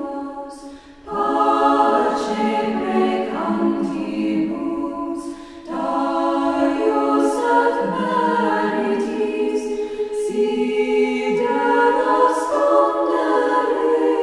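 A choir singing a cappella in slow, sustained phrases, with short breaks between phrases about a second in and again near the middle.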